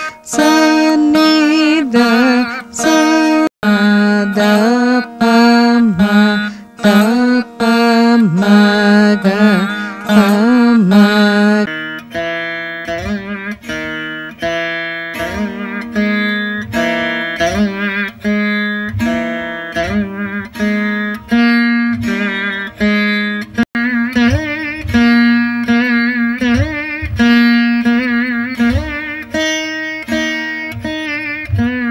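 Saraswati veena playing a Carnatic alankaram exercise: plucked notes with sliding, wavering pitch bends. The tone changes suddenly about twelve seconds in, and after that low notes sound on regular strokes beneath the melody.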